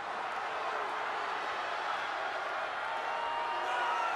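Large arena crowd noise: a steady din of many voices shouting and cheering.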